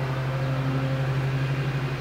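Steady low mechanical hum, even in level, with faint higher overtones above it.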